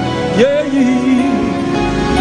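Live gospel worship singing with instrumental accompaniment; a voice slides up into a long, wavering held note about half a second in.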